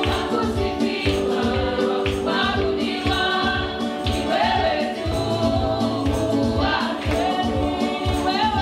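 Gospel praise singing: women's voices singing into microphones over a band accompaniment with a steady drum beat.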